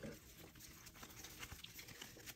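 Near silence with faint rustling and soft ticks of trading cards being handled and shuffled in the hand.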